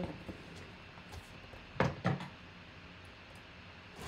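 A cardboard shipping box being handled on a table: one sharp knock about two seconds in, with a smaller click before it, over faint room tone.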